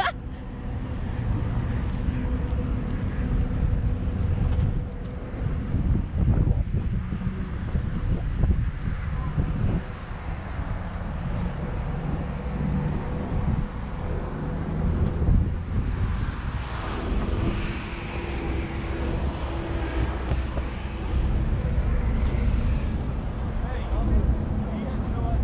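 Wind buffeting the microphone as a low, uneven rumble, mixed with road traffic passing.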